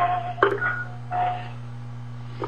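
Answering-machine playback heard over a phone line: a click and a couple of short beeps in the first second and a half, then a steady low hum of line noise.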